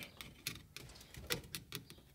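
Faint, irregular small clicks and ticks as a test-light probe is worked against the metal terminals of an ignition-switch wiring connector.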